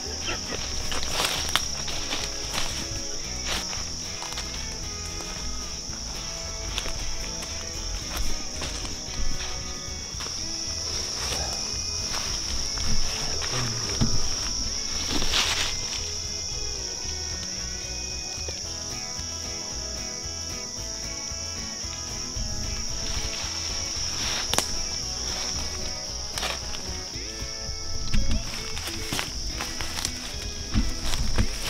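Footsteps crunching through dry leaf litter and sticks, a step every second or so at irregular intervals, over a steady high-pitched insect chorus. Background music plays underneath.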